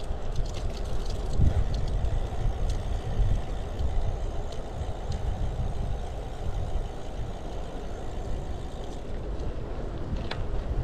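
Wind buffeting an action camera's microphone during a bicycle ride, a steady low rumble, with the hum of bicycle tyres rolling on asphalt.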